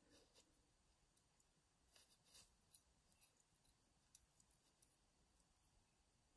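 Near silence, with a handful of faint small metal clicks spread through the middle as a hex key turns grub screws into the pin holes of a brass Yale euro cylinder lock.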